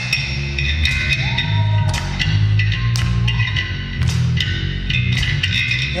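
Live rock band playing an instrumental passage with no vocals: electric guitar, bass guitar and drums.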